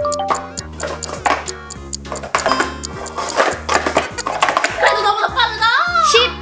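Red plastic speed-stacking cups clacking in quick, irregular clicks as they are stacked up and collapsed, over background music with a steady bass line. A voice laughs near the end.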